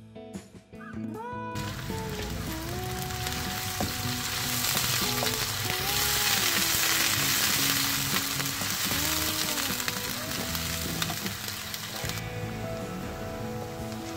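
Finely chopped onions sizzling in hot cooking oil in a nonstick kadhai as a wooden spatula stirs them, while they brown lightly. The sizzle starts about a second and a half in, after a stretch of music, and swells in the middle.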